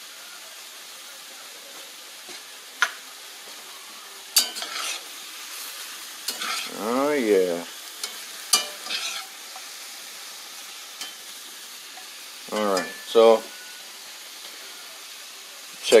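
Shrimp sizzling steadily in a hot cast iron skillet, with clicks and scrapes from a utensil stirring them against the pan. A short voice sound a few seconds past the middle, and two brief ones near the end.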